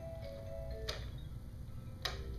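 Small electronic toy playing a simple tune of steady beeping notes, with a sharp click about halfway through.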